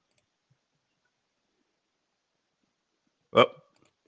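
Near silence for about three seconds, then a man's short, loud exclamation, "Oh," near the end.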